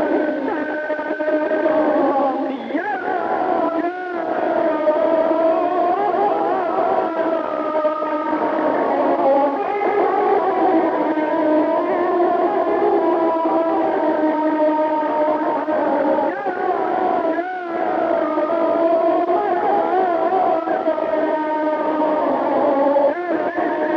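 Electric guitar run through echo and distortion, playing a sustained melody full of wavering bends and trills in the style of Azerbaijani wedding (toy) music.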